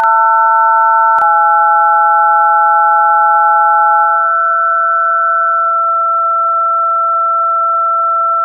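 Loud electronic sine-wave tones held together as a chord of pure notes, the kind of test tone played over TV colour bars. One note steps down about a second in, another drops out around four seconds, and the top note steps down near six seconds, leaving two steady tones.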